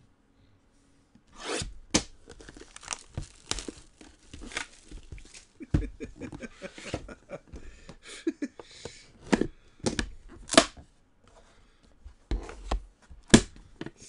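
Cardboard case of trading-card boxes being cut and torn open by hand: a run of sharp rips and scrapes with crinkling, and knocks as the boxes are handled. It starts about a second and a half in.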